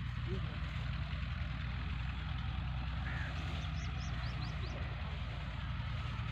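Massey Ferguson 240 tractor's three-cylinder diesel engine idling steadily. Small birds chirp a few times in the second half.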